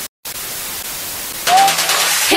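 Television static sound effect: a steady hiss that cuts out for a moment just after the start. About a second and a half in, it gives way to a louder sound carrying a short rising tone.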